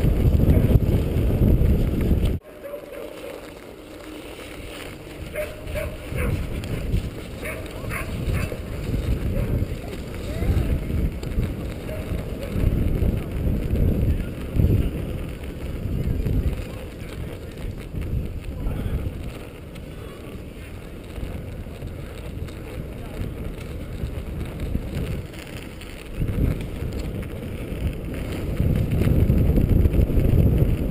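Wind buffeting the microphone of a camera on a bicycle riding over snow-covered ice, under the rumble and crunch of homemade studded road tyres. The wind noise drops off suddenly a couple of seconds in and builds up loud again near the end.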